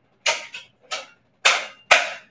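Lifepro PowerFlow Pro adjustable dumbbells clicking in their cradles as the weight setting is changed: about five short, sharp clicks, the last near the end the loudest.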